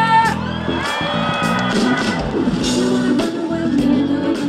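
Live band playing an upbeat pop song, electric guitar and bass under a singer's held, gliding notes, with a steady beat. The crowd whoops and shouts along.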